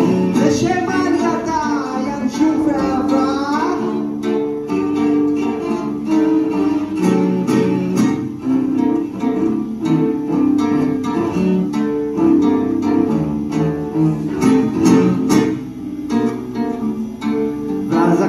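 Live instrumental passage of a Russian seven-string guitar being plucked under a bowed cello, with many separate plucked notes over held cello tones. In the first four seconds a wavering, sliding line rises and falls above them.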